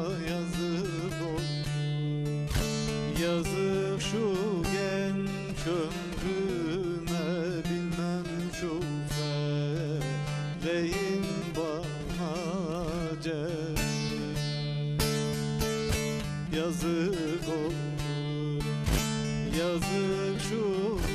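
Bağlama (long-necked Turkish saz) played with a plectrum: quick plucked melody notes over a steady ringing low drone, with a man singing a Turkish folk song (türkü) in a wavering, ornamented voice on some passages.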